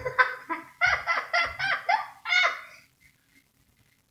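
A child's high-pitched laughing or squealing in a quick run of short bursts that stops about two and a half seconds in.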